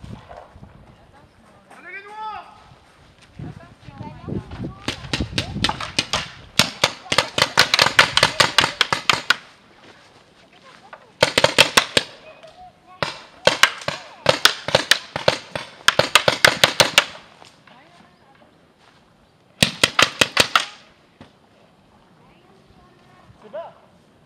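Paintball markers firing rapid strings of shots, about seven or eight a second, in four bursts with pauses between them. The longest burst runs about four seconds.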